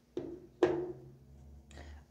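Two knocks about half a second apart as tarot cards are handled on a tabletop, the second with a short ringing fade.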